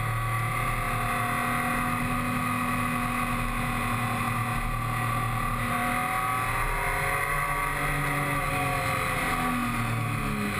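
Triumph Tiger 955i's three-cylinder engine running under way, heard from a camera mounted on the bike. The engine note holds steady, then dips through a bend in the second half and climbs again near the end.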